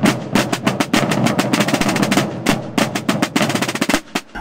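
A massed group of Holy Week processional drums (tambores) beaten with sticks together in a fast, dense rolling rhythm of many overlapping strokes.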